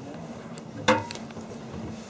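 A single sharp knock with a short ringing tail about a second in, followed by a couple of small clicks, over a steady low hum inside a train carriage.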